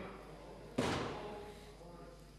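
A single sharp knock about a second in, ringing out and fading over about a second.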